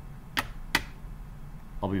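Two quick, sharp clicks about a third of a second apart, typical of a computer mouse button being clicked.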